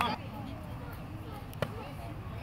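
Faint distant voices with one sharp knock about one and a half seconds in.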